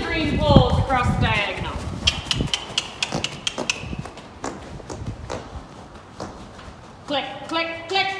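A grey horse trotting on the dirt footing of an indoor riding arena: a run of soft, quick hoofbeats, about three a second, through the middle. A voice is heard at the start and again near the end.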